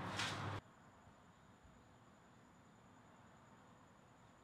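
Near silence: a brief trail of faint room sound, then the sound drops away to almost nothing about half a second in.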